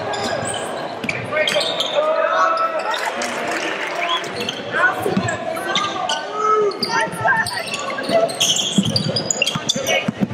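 Basketball game sound in a gymnasium: the ball bouncing on the hardwood court, sneakers squeaking and shouting voices, all echoing in the large hall.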